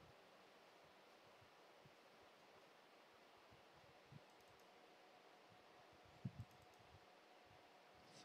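Near silence: room tone, with a few faint clicks about four seconds and six seconds in.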